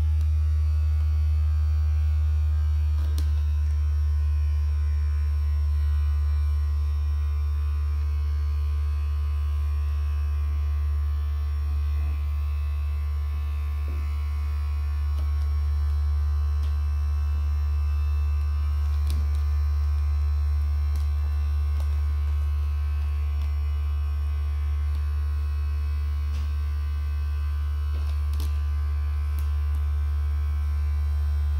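Handheld heat press giving a loud, steady low electrical hum while it presses, with a few faint clicks.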